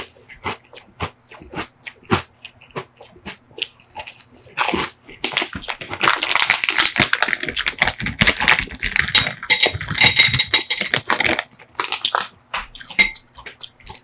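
Close-miked crunching and chewing of a crisp sugar cone in sharp, separate crunches. From about five seconds in comes a long stretch of crinkling from a plastic snack bag as Maltesers are poured into a glass bowl, with light clinks, then a few scattered clicks near the end.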